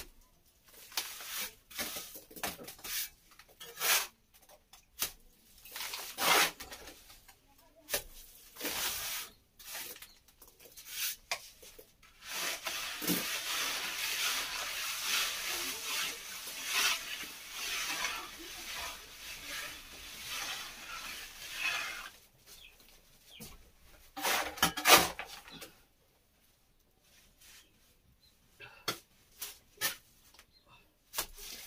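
Plastering trowel scraping and spreading cement plaster on a wall in repeated strokes, with a stretch of continuous scraping in the middle and a few louder strokes near the end.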